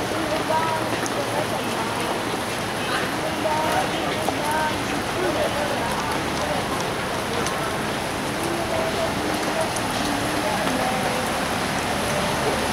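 Steady hiss of rain falling on a flooded street, with faint distant voices.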